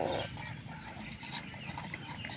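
Puppies eating from plastic bowls: a run of small wet clicks of chewing and lapping, opened by a short puppy squeak.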